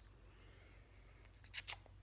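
Near silence: quiet room tone with a low steady hum, broken about one and a half seconds in by a brief rustle.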